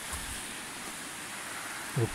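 Shallow mountain stream running over a bed of stones, a steady rushing hiss.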